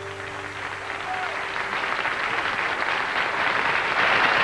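Audience applause swelling at the end of a song, growing louder throughout; the last held chord of the music fades out just at the start.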